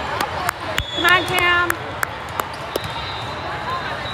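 Volleyballs smacking off hands and the hardwood court in a large, echoing hall, in sharp irregular hits over a steady din of voices. About a second in, a player's short high-pitched shout is the loudest sound.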